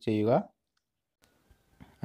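A man's voice speaking briefly, cut off after about half a second, then near silence with only a faint hiss and a small tick near the end.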